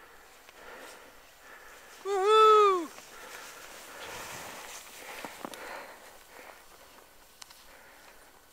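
A person's loud whoop, one call that rises and then falls in pitch, about two seconds in. It is followed by the soft hiss of skis turning through powder snow.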